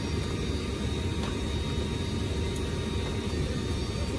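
Steady drone of a C-130J Super Hercules's four Rolls-Royce AE 2100 turboprop engines and propellers, heard inside the cargo hold, a constant low rumble with faint steady tones above it.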